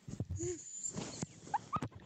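A girl's breathy, squeaky giggling, with two short high rising squeals near the end.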